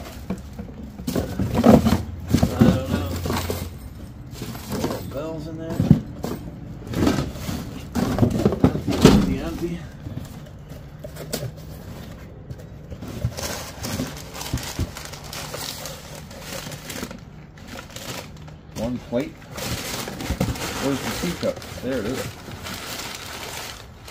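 Cardboard boxes and crumpled newspaper packing being handled and unwrapped, with rustling, crinkling and knocks of things being moved. Short stretches of indistinct talk come and go.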